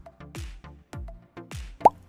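Electronic background music with a steady beat of deep kick drums that drop in pitch. Just before the end, a short rising 'bloop' is the loudest sound.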